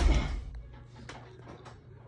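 A dull thump at the start that dies away within half a second, followed by a few faint clicks over a low steady hum.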